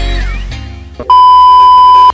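Background music fading out, then about a second in a loud, steady test-tone beep of the kind that goes with TV colour bars, held for about a second and cut off sharply.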